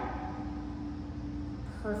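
Low, steady room noise with a faint, thin, steady hum that fades out after about a second and a half; a woman starts speaking near the end.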